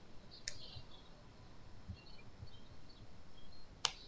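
Two sharp clicks of a computer mouse button, one about half a second in and a louder one near the end, over faint room noise.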